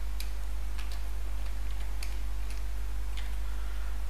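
Scattered single computer keyboard keystrokes, a few faint clicks at irregular intervals while code is typed, over a steady low hum.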